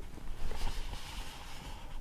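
Hand brushing across the paper page of an open picture book: a brief rustle that starts about half a second in and fades after about a second.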